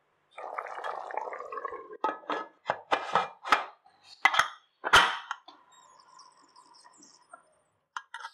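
A spatula stirs thick mutton curry in a pressure cooker, then a run of sharp metal clacks and clinks comes as the Premier pressure cooker is closed and its whistle weight is set on the steam vent. The loudest clack comes about five seconds in.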